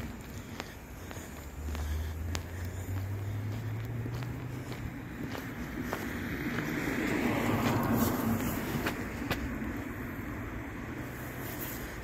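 Street traffic: a low engine hum, then a vehicle passing with tyre noise that swells and fades about seven to eight seconds in. Footsteps about once a second run underneath.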